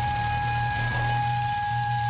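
A miniature park train's whistle blowing one long steady note, over the low, steady running of the locomotive's engine.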